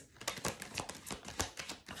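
A deck of tarot cards being shuffled by hand: a quick, irregular run of light card clicks and taps.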